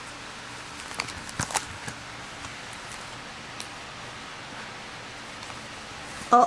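Clear plastic pocket pages of a trading-card binder being handled, crinkling and clicking a few times about one to two seconds in and once more midway, over a steady hiss.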